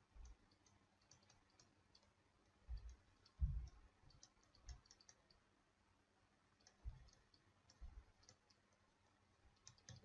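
Faint clicks and taps of a stylus writing on a tablet, over near silence. There are a few soft low thumps, the loudest about three and a half seconds in.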